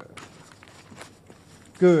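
Newspaper pages rustling faintly as they are handled, with a few small irregular crackles. A man's voice comes back near the end.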